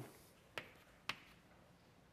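Chalk striking a blackboard: two sharp taps about half a second apart as short marks are chalked on, with near silence between them.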